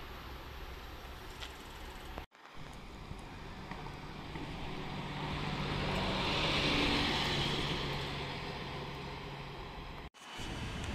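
A city bus driving past: its engine note and tyre hiss grow louder to a peak about seven seconds in, then fade. Before that, a steady rumble from a bus standing at a stop, broken off abruptly about two seconds in.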